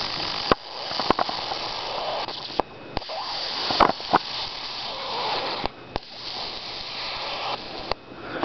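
High-voltage arc drawn from a flyback transformer driven by a homemade ZVS driver: a hot, lower-voltage arc hissing and crackling steadily, with several sharp snaps at irregular moments.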